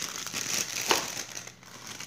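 A thin plastic produce bag holding green peppers crinkling as it is handled and set down, with one sharp crack about a second in.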